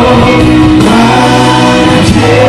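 Choir singing a gospel song in Malagasy with amplified instrumental backing and a held bass line, loud and steady.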